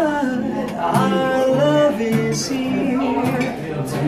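A man singing a slow love song to his own strummed acoustic guitar.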